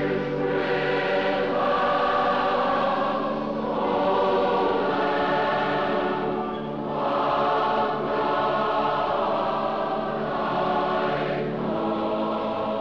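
A large choir singing a slow hymn, the voices holding long notes in phrases of a few seconds each.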